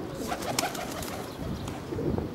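A bird calling briefly about half a second in, over a low, fluctuating rumble of wind on the microphone.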